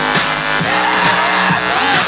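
Loud electronic dance music over a party sound system, with a steady kick drum and a wavering, screechy synth line through the middle.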